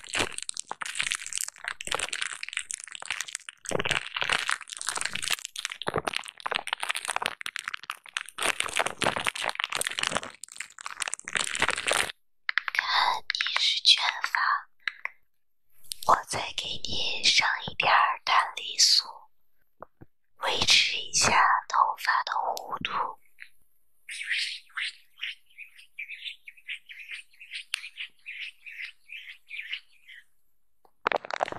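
Fingers scratching and pressing a plastic bubble-wrap sheet close to the microphone, a dense crackling and crinkling that lasts about twelve seconds. After that come separate wet, squelchy pumps from a plastic pump bottle, and then short, quick repeated squishes.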